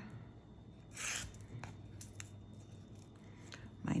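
Waxed linen thread being drawn through the fabric-backed base of a pine needle basket: one short rustling pull about a second in, then a few faint ticks of handling.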